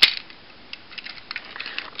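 Plastic Transformers action figure being handled: one sharp click of a joint at the start, then a few faint light ticks of plastic parts being moved.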